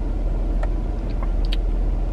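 Parked car's engine idling with the air conditioning on, a steady low rumble heard inside the cabin, with a few faint ticks over it.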